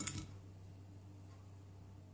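A brief fork-on-plate sound fading away right at the start, then faint room tone with a low steady hum.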